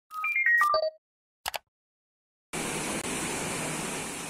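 Logo sting: a quick run of electronic chime tones stepping down in pitch, then a brief swish about a second and a half in. About two and a half seconds in, a steady rushing noise of wind and surf comes in.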